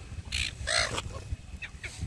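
Silver gulls squawking: two short, harsh calls about half a second apart near the start, then a few fainter calls near the end.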